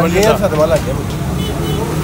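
A man says a word or two over a steady low mechanical rumble that carries on unchanged after he stops.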